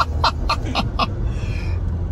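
A man laughing heartily, in quick pulses about four a second that die away after the first second, over the steady low rumble of the vehicle's engine and tyres inside the cabin.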